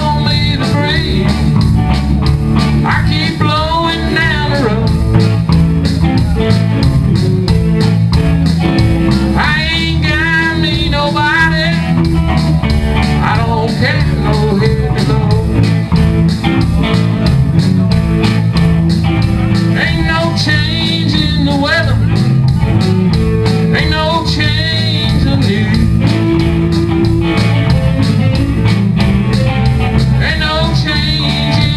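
Live band playing a song on electric guitars and bass guitar with a steady beat, the music continuing without a break.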